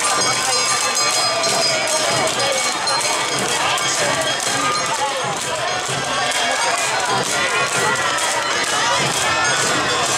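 Awa Odori festival dance music played for a troupe of dancers, a steady rhythm of evenly spaced strikes under pitched melody, mixed with the voices of a crowd of onlookers.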